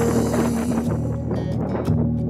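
Background music: a country-style song in an instrumental stretch between sung lines, with steady held notes over a bass line.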